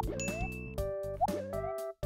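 Light background music with cartoon sound effects: two quick rising plop-like pitch sweeps about a second apart and a short high ding after the first. The music breaks off briefly at the very end.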